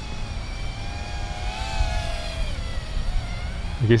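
Motors and propellers of a 65 mm toothpick micro quadcopter whining in flight, heard from the ground over a low background rumble. The whine dips in pitch around the middle and rises again near the end as the throttle changes.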